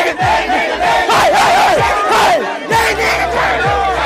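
A large crowd yelling and chanting loudly, with voices wavering up and down in pitch, over music from a portable party speaker with a deep bass note that slides down on each beat.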